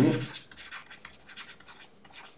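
Stylus scratching on a tablet while handwriting words: a quick run of short, scratchy strokes.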